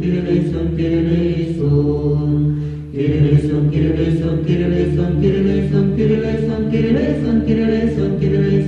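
Orthodox liturgical chant sung a cappella by several voices in held chords, with a short break about three seconds in.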